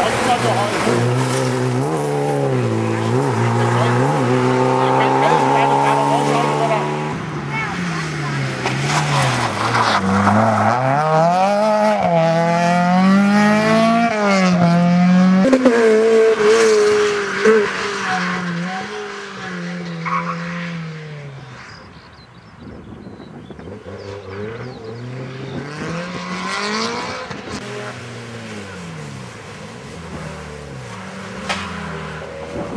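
Volkswagen Golf rally cars' engines revving hard, the pitch climbing through each gear and dropping sharply at every shift, several cars heard in turn.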